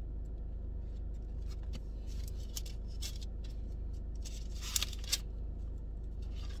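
Thin book pages being turned and rustled as someone pages through to a passage: a string of short papery rustles, the sharpest two about five seconds in, over a steady low hum.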